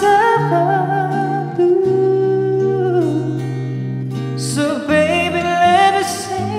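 A man singing long held notes with vibrato into a handheld microphone over a steady instrumental accompaniment. The line drops in pitch about halfway through and a new phrase starts near the end.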